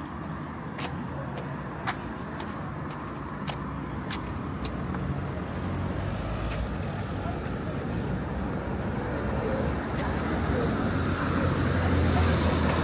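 Road traffic at a town junction: cars passing close by, the engine and tyre noise growing louder toward the end as a car comes right up alongside. A few faint short clicks in the first half.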